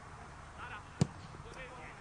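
A single sharp thud about a second in, a football being kicked, with faint distant shouting of players around it.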